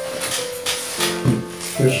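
Soft piano music with held notes, while the pages of a paperback book rustle as they are leafed through. A man's voice comes in briefly near the end.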